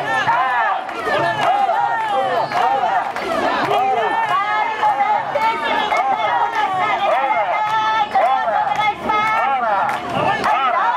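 Many women's voices chanting and shouting together as they carry a portable shrine (mikoshi), a dense, continuous crowd chant.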